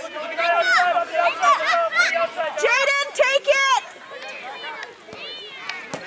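Several excited voices shouting and calling over one another as spectators cheer on a children's soccer game, dying down after about four seconds.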